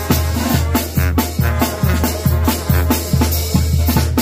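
A live Mexican brass banda playing: trumpets and trombones carrying the melody over a sousaphone bass line, with a drum kit keeping a quick, steady beat.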